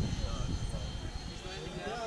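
Distant electric-ducted-fan RC jets flying overhead: a thin, steady high whine, with one tone rising in pitch near the end as a fan spools up.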